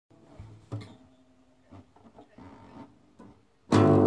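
Nylon-string classical guitar: a few soft, sparse plucked notes, then near the end a sudden, much louder chord that rings on.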